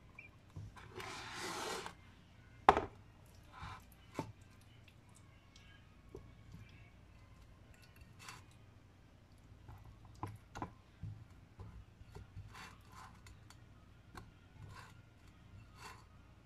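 Hands pressing marinated shrimp, potato and onion down into a glass jar: soft rubbing and scattered small clicks, with a brief rustling hiss about a second in and one sharp knock a little under three seconds in.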